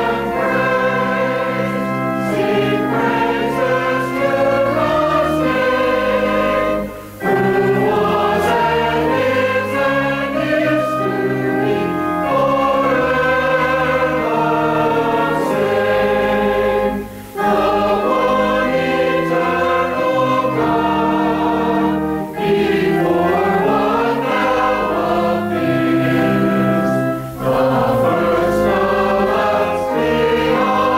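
Mixed church choir of men's and women's voices singing a Christmas cantata number. The singing is continuous, with a few brief breaks between phrases.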